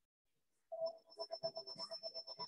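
A short electronic melody of rapid, evenly pulsing notes starts suddenly about two-thirds of a second in, after near silence.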